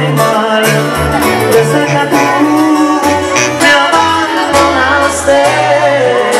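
A regional Mexican band plays live and loud over the PA, with plucked strings over a pulsing bass line.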